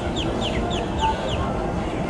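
A bird calling a quick run of short falling notes, about four a second, that stops about one and a half seconds in, over steady background noise.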